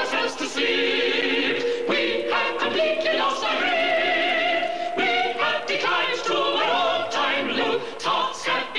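Musical-theatre music with a choir singing, the voices holding long notes through the middle.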